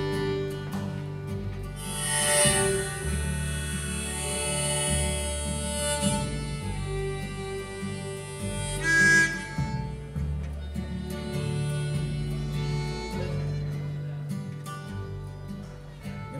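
Acoustic string band playing an instrumental intro: fiddle carrying the melody over strummed acoustic guitar, mandolin and upright bass.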